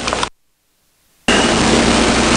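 Steady hiss of the recording's background noise that drops out to dead silence for about a second shortly after the start, then cuts back in abruptly at full level.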